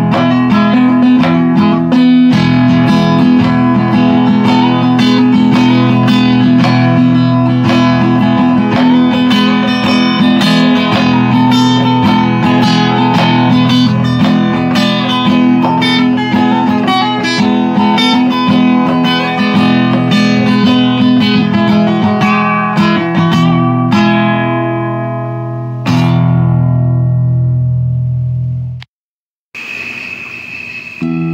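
Solo acoustic guitar playing busy fingerpicked notes over low open strings that ring steadily underneath. Near the end the playing thins and fades, a last chord rings out and cuts off into a brief silence, and a new guitar piece starts just before the end.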